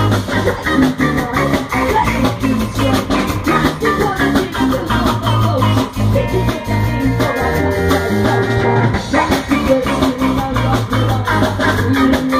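A live ska-punk band playing: drum kit, bass and electric guitar with a female lead voice singing over them. A higher note is held for a few seconds in the middle.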